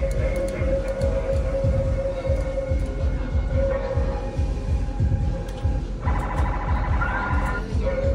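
Electronic arcade game music with a pulsing low beat under a held tone; about six seconds in, a higher, busier pattern takes over for a second or two before the held tone returns.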